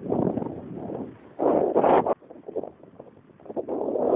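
Wind buffeting the camera microphone in uneven gusts: a rumbling rush, loudest at the start and again about a second and a half in, then fading to a faint flutter.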